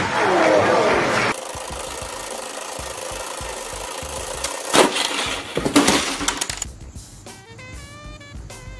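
A loud falling cry in the first second, then the Perfection board game's timer running steadily, with two sudden loud bursts about five and six seconds in as the board pops up. Music starts near the end.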